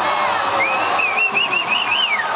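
Ice hockey arena crowd noise, with a spectator's high-pitched wavering shout rising about half a second in and held for over a second as play scrambles in front of the net.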